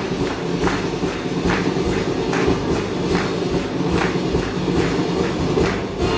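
Dance music for a carnival guard dance with a heavy, even thumping beat. There is a strong thump a little more often than once a second, with lighter ones between, and the dancers' steps on the stage floor mix in.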